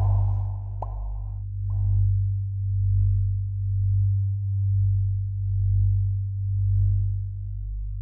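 A low, steady electronic drone that swells and fades in loudness at an even pace, about once a second. In the first two seconds a few short, muffled hissy bursts sound over it.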